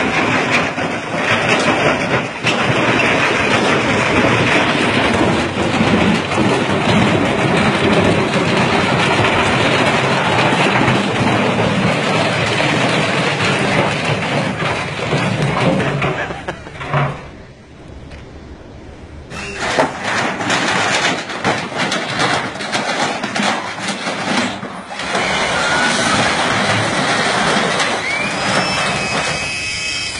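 Wrecked front-loading washing machine clattering and rattling continuously, its torn-loose drum and broken parts still going against the concrete after a spin cycle with a large stone inside burst the cabinet apart. The racket drops away briefly about two-thirds of the way through, then starts again.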